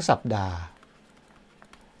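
A man speaking Thai for the first moment, then a few faint, light ticks of a stylus tapping on a tablet screen as he handwrites.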